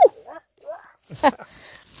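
A woman's short wordless vocal sounds of surprise, then near the end a light rustling of moss and twigs as a gloved hand reaches into the ground cover to pick a chanterelle mushroom.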